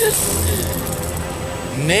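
A large prize wheel spinning, the metal studs on its rim running past the pointer, over background music.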